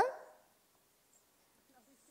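A woman's amplified voice ends on a drawn-out, rising syllable that fades within half a second. After it there is near silence, only faint room tone.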